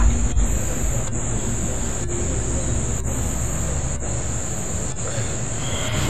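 Crickets chirping in a steady, high-pitched night-time chorus.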